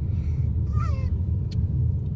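Steady low rumble of road and engine noise inside a moving car's cabin. A brief faint falling squeak comes a little under a second in, and a small click follows.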